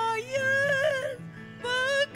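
A woman singing a solo song with vibrato over soft, held accompaniment chords. She sings a long phrase, pauses briefly, and starts the next phrase near the end.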